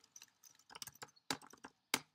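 A handful of separate keystrokes on a computer keyboard, sharp individual clicks spaced irregularly, as if typing slowly.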